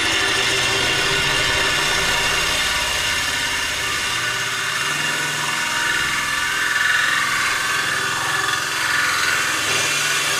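Cordless drill running steadily under load, its hole-cutting bit grinding into the glass wall of an aquarium.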